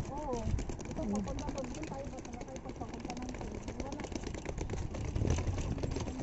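Quiet voices talking over a steady low outdoor street rumble, with light clicks and knocks throughout.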